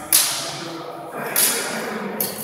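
Two sharp sword strikes from steel cut-and-thrust swords in a fencing bout, about a second and a quarter apart; the first is the louder.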